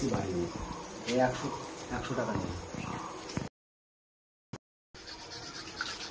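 People talking in low voices for about three seconds over a steady high-pitched whine. Then the sound cuts out completely for about a second and a half, and a quieter background returns.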